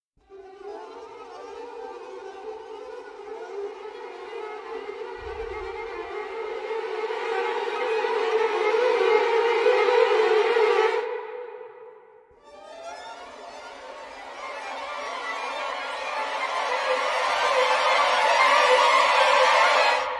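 Sampled small section of first violins playing aleatoric runs: a dense swarm of fast, unsynchronised runs that grows louder and more intense as the mod wheel is pushed. It dies away about eleven seconds in, then a second passage swells up again to the end.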